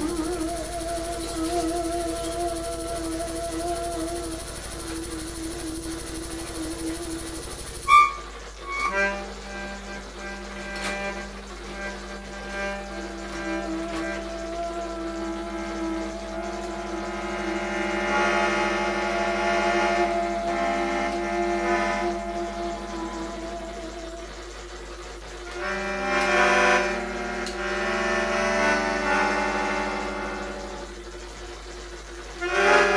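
Melodica blown through a mouth tube in a free improvisation with live electronics: long, slightly wavering reedy held notes and chords. About eight seconds in the texture changes abruptly with a sharp click, and layered held tones then build and swell twice.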